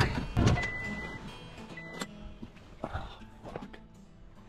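A pickup truck's door being opened as someone climbs out: a few knocks and clicks, with two short high beeps in the first two seconds. Faint background music runs underneath.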